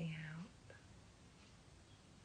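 A woman's soft voice saying "out", ending about half a second in, then quiet room tone.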